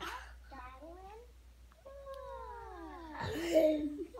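A toddler's high-pitched vocalizing: short wavering squeals, then a long falling squeal ending in a loud shriek near the end.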